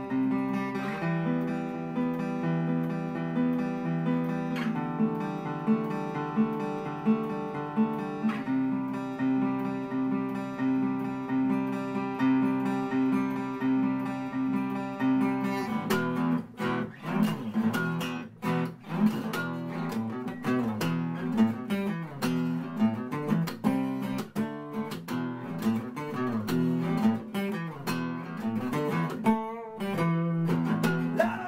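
Solo acoustic guitar played live: ringing picked chords that change every few seconds, then from about halfway through, faster rhythmic strumming with sharp percussive strokes.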